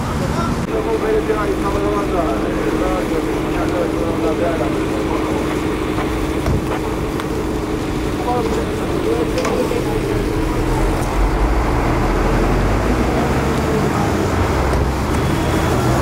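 A motor vehicle engine running nearby with a steady hum, heavier rumbling in the second half, amid indistinct talk of bystanders.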